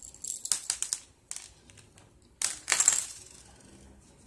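Small buttons tipped out of a crocheted coin purse, clattering onto a tabletop as quick clusters of clicks: one burst in the first second, and a louder one about two and a half seconds in.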